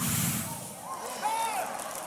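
A man blowing hard into a microphone, a sudden whooshing gust like wind that fades over about a second.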